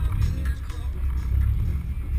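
BMW E36 M3's S54B32 straight-six running as the car rolls slowly, a low uneven rumble, with music playing over it.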